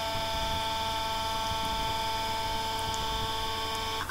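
A steady, buzzy electronic tone held at one unchanging pitch, rich in overtones, like a synthesized voice stuck on a single vowel.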